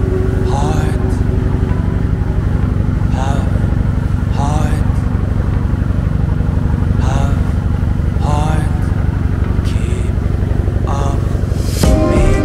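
Bumboat engine running steadily under way, a loud continuous low drone, with voices talking now and then over it.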